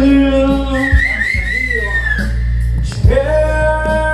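Karaoke: a man singing through a microphone over a backing track, holding a long note at the start and another from about three seconds in. Between them a single high wavering tone sounds for about a second and a half.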